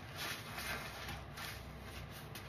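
Wet, foamy kitchen sponges squeezed and rubbed between gloved hands, giving a run of soapy squishing swishes.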